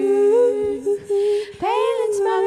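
Women's voices singing a cappella in close harmony, holding long notes together. The voices drop out briefly just past a second in, with an audible breath, then come back in near the end on a new note that swoops up into place.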